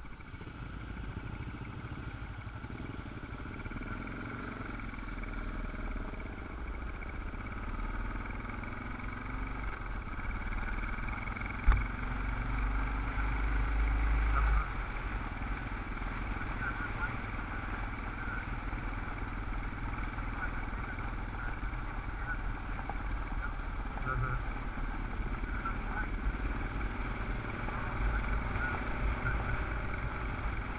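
Dual-sport motorcycle engine running steadily while riding a gravel road, heard through a helmet camera with heavy wind rumble on the microphone. A single sharp knock comes about twelve seconds in, followed by a couple of seconds of louder rumble.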